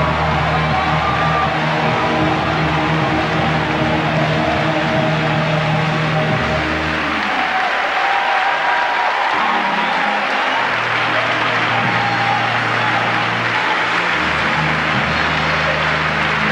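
Audience applauding over live gospel band backing, with held low bass notes that shift every few seconds.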